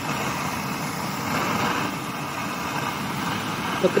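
Handheld gas torch flame hissing steadily as it heats a copper sheet.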